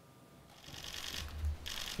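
Near silence, then faint background rustle and a low rumble that grow from about half a second in.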